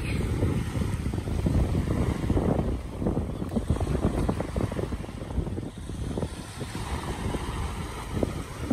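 Wind buffeting the microphone over small waves washing in at the shoreline, an uneven rumble with short surges.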